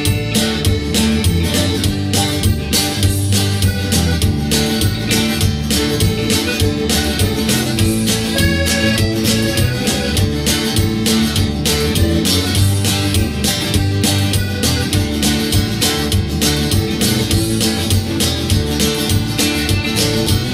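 Instrumental break of a live country-folk song: button accordion over strummed acoustic guitar and electric guitar, with a steady beat.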